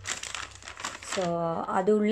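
Clear plastic packaging bag crinkling as hands handle it, lasting about the first second, then a woman's voice.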